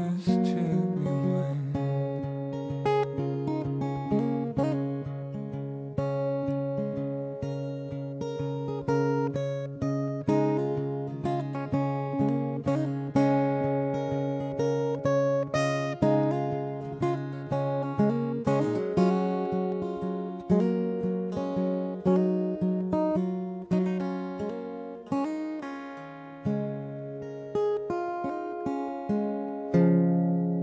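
Solo acoustic guitar fingerpicked in an instrumental passage: a steady run of plucked notes over low bass notes that ring on beneath them.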